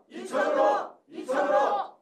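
A group of people shouting a slogan in unison twice, about a second apart: 'Icheon-euro!' ('To Icheon!').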